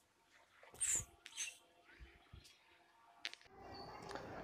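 A small bird chirps faintly twice, about a second in, over quiet outdoor background, with a soft click near the end.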